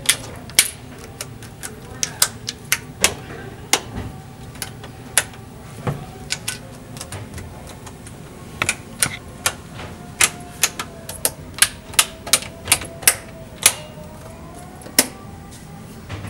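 Push buttons and switches on a play-structure control panel clicking sharply as they are pressed by hand, in an irregular string of clicks that comes fastest in the second half.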